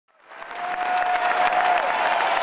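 An audience applauding, the clapping rising quickly from silence to full strength in the first half-second. A steady high tone sounds through the clapping for about a second and dips in pitch as it ends.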